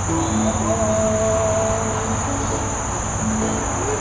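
A steady, high-pitched insect chorus of crickets, with a few faint held notes from the string instruments in the first half.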